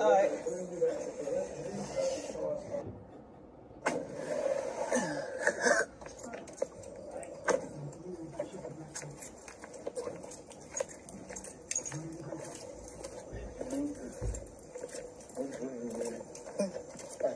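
Indistinct, muffled voices, with many short clicks and knocks through the second half.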